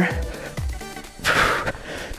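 Background music with a steady beat, and a short hiss about one and a half seconds in.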